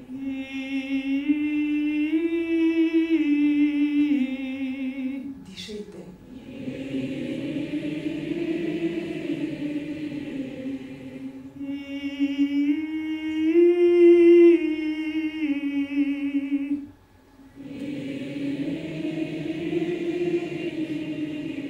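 Call-and-response vocal warm-up. A mezzo-soprano sings a short phrase with vibrato, stepping up and back down in pitch, and a large audience sings it back as a blended mass of voices. The exchange happens twice.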